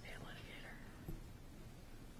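Faint, off-microphone speech over low room hum, with one small click about a second in.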